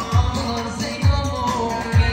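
Live Turkish folk-pop music: a male singer into a microphone, backed by bağlama and keyboard, with a deep bass-drum beat about once a second.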